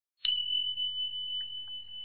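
A bell-like ding struck once about a quarter second in: a single high, pure ringing note that rings on and slowly fades, over a faint low hum.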